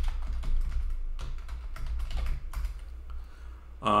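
Typing on a computer keyboard: a quick, irregular run of key clicks that thins out near the end, over a steady low hum.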